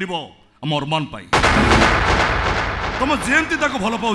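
A man's line of dialogue, then about a second and a half in a sudden loud bang that fades away over about two seconds, with speech starting again under its tail.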